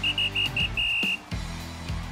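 A high whistle sounding four short blasts on one pitch and then a longer one, over bass-heavy outro music.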